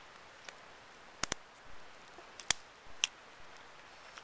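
Small campfire of sticks crackling: a handful of sharp, irregular pops and snaps, two of them in quick succession a little over a second in, over a faint steady hiss.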